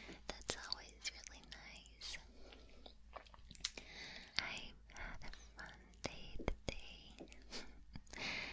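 Soft whispering very close to the microphone, too quiet for words, with many small wet mouth clicks in between.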